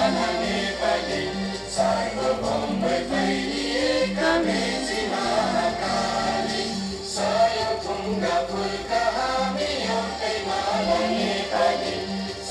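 A choir singing a song with instrumental accompaniment, over a steady, evenly pulsing low note.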